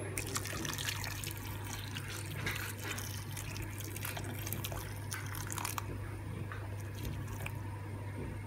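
Boiling water poured in a steady stream into a stainless steel pot, splashing over sliced sweet potatoes and carrots as the pot fills.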